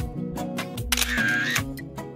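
Background music with a camera-shutter sound effect about a second in.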